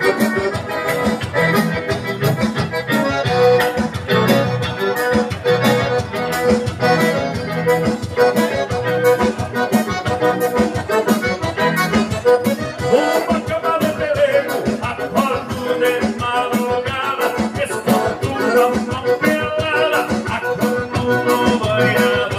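Live band music led by an accordion, with acoustic guitar and a steady rhythmic beat.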